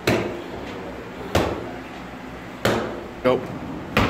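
Boxing gloves striking padded focus mitts in a jab drill: four sharp smacks, the first three spaced more than a second apart and the last following closely.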